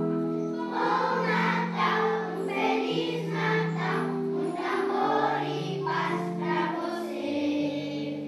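Children's choir singing, holding long notes that move from pitch to pitch.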